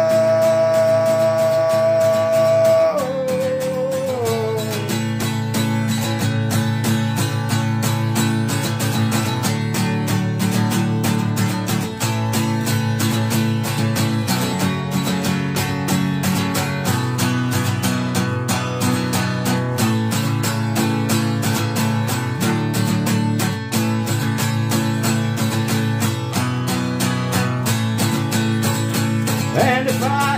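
Acoustic guitar strummed in a steady country rhythm as an instrumental break. A man's held sung note carries over at the start and slides down to an end about three to four seconds in, leaving the guitar alone.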